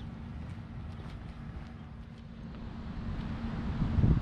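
Low rumble of wind on the microphone, with a faint steady hum that fades out about three seconds in.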